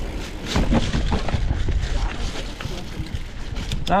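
Mountain bike rolling over a rough dirt trail: a steady low rumble of tyre and wind noise with many small knocks and rattles from the bike.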